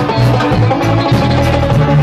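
Live band playing amplified music: acoustic and electric guitars over a bass line and drums, without singing.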